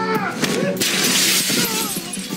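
Dramatic music from a TV show clip, with a crash of something breaking that starts a little under a second in and lasts about a second.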